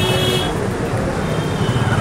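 Street traffic noise with a motor vehicle's engine running close by as a steady low rumble. A short, high horn toot sounds right at the start.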